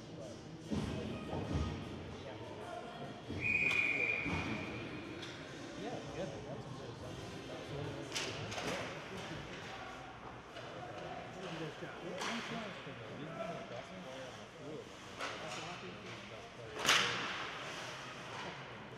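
Live ice hockey game sound in an arena: sticks and puck clacking now and then over background voices, a short whistle blast about three and a half seconds in, and a sharp crack of a shot on goal near the end.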